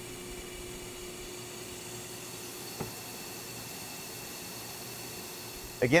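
Steady rushing hiss of air with a faint hum from a thermal forcing system blowing heated air onto an FPGA, heating it toward an 85 °C junction temperature. There is one small click a little before the middle.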